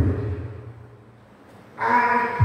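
A low rumble that fades away over about a second, then a brief lull, and near the end a man's voice comes in on a long held note.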